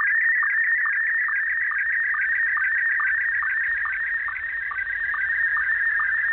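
Shortwave radio signal received in upper sideband: a steady high tone that pulses rapidly, several times a second, with a lower blip about twice a second.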